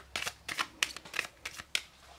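A deck of Lenormand oracle cards shuffled by hand: a quick, irregular run of crisp card slaps and riffles, about four a second.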